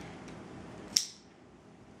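A plastic strap buckle on a twin nursing pillow clicking shut once, a single sharp snap about a second in.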